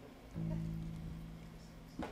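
A guitar note plucked about a third of a second in and left ringing, slowly fading, with another string plucked right at the end.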